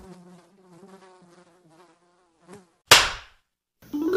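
Housefly buzzing sound effect, faint and wavering, that stops after about two and a half seconds. A single sudden loud hit follows about three seconds in.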